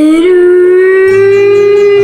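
A long, loud, sustained tone that glides upward at the start and then holds nearly steady. A low hum joins it about a second in.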